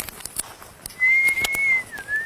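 Whistling: one long, level note starting about a second in and held for about a second, then dropping into a short, slightly lower note at the end.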